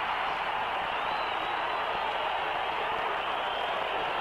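Steady stadium crowd noise from a television broadcast, the crowd reacting to an interception-return touchdown.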